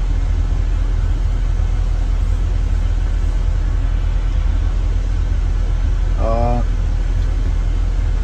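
Steady low rumble of a car heard from inside its cabin, with a short hum of a voice about six seconds in.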